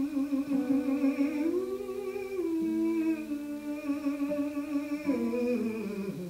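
Tenor voice humming a slow wordless melody in long held notes with vibrato, stepping up and back down in pitch, over a gentle plucked guitar accompaniment.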